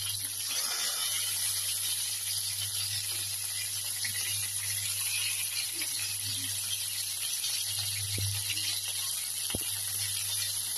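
Chicken wings sizzling in hot oil in a frying pan, a steady hiss, with two light knocks near the end as a wooden spatula shifts them in the pan.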